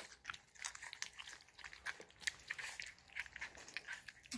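Bull Terrier puppies, about four and a half weeks old, eating a soft, wet mush from stainless steel bowls: faint, irregular smacks and licks.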